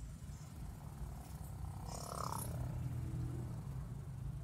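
Steady low rumble of a Kia Timor sedan's engine and road noise heard inside the cabin while it drives slowly in traffic. A brief indistinct voice comes in about halfway through.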